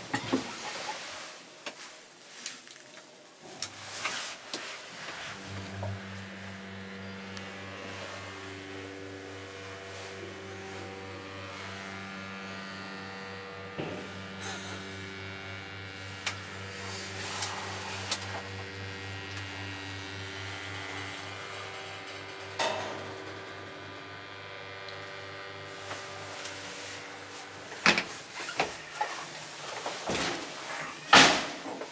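Elevator running: a few knocks as the car door shuts, then a steady low hum from the lift's drive from about five seconds in while the car travels, stopping near the end, followed by a few more knocks.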